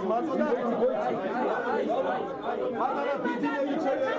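Crowd chatter: many men talking over one another in a packed room, with no single voice standing out.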